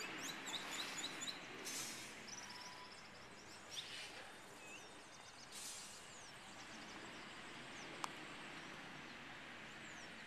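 Songbirds chirping in short, high, repeated notes over steady outdoor background noise, with a single sharp click about eight seconds in.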